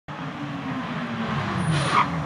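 Porsche 911 (997-generation) rally car's flat-six engine running as the car approaches, its note steady and growing louder as it nears.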